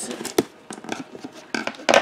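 Scissors cutting the packing tape on a cardboard box, with a sharp click about half a second in and a louder short scrape near the end.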